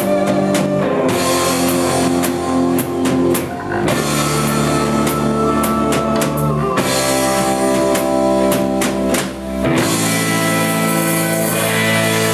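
Live rock band playing loudly: electric guitar, bass guitar and drum kit, with held chords that change about every three seconds over drum and cymbal hits.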